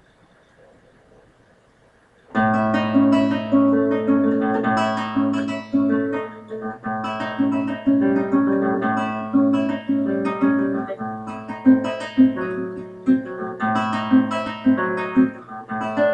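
Classical guitar played fingerstyle, starting a little over two seconds in: plucked arpeggio-like figures with repeated notes over sustained bass notes, at a steady pace.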